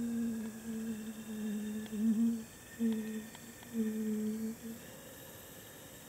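A person humming on a low, nearly steady pitch: one long note of about two and a half seconds, then a few shorter ones, stopping about four and a half seconds in.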